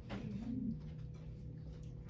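Quiet classroom room tone with a steady low hum, and one soft, low, rising-and-falling hum-like sound about half a second in.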